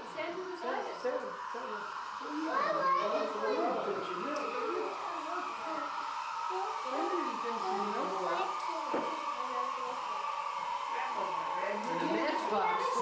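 Indistinct chatter of adults and small children talking in a room, no clear words, over a steady hum.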